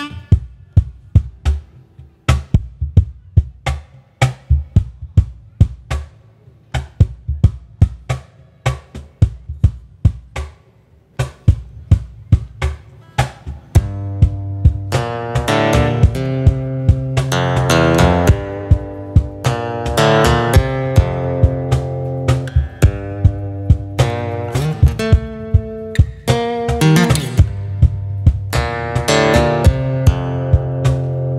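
Solo percussive folk tune. For about the first fourteen seconds a hand slaps the wooden box he sits on, cajón-style, in a steady beat. Then acoustic guitar bass notes fretted with one hand and a rack-held harmonica come in over the beat and the music grows louder.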